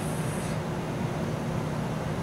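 A steady low hum with even background noise over it, unchanging throughout.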